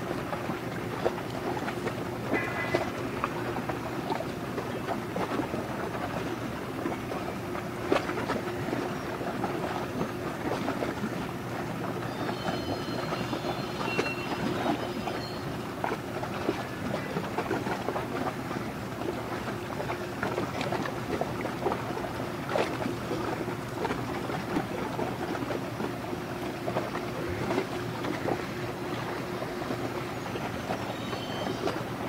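Low steady engine drone of a container ship passing close by, with water from its bow wave splashing and slapping at the hull. A few brief high chirps sound about two seconds in and again around twelve to fifteen seconds.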